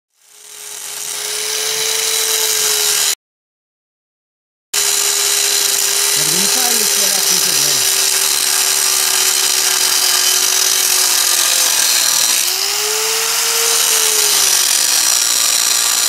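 Angle grinder with an abrasive cutting disc cutting through a motorcycle's steel rear rack: a steady high whine over a harsh grinding hiss. The sound breaks off for about a second and a half about three seconds in, and its pitch wavers as the disc bites into the metal.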